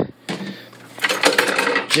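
Small objects rummaged through on a desk: a knock at the start, then from about halfway in a quick run of clicking, rattling and crinkling as plastic containers and a packaged filter pad are handled.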